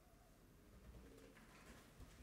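Near silence: room tone, with a few faint, short tones.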